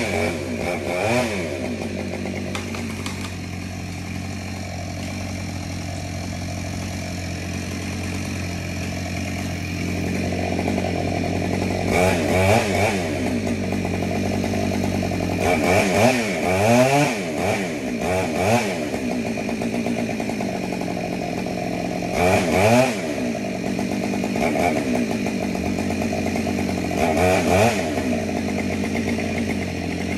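Chainsaw working on a dead tree, idling steadily and revved up several times, its pitch rising and falling in short sweeps near the start, then about twelve seconds in and repeatedly through the second half.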